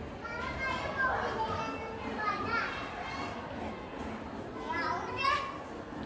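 Children's voices in the background: faint, scattered chatter and calls of children playing, with no close voice speaking.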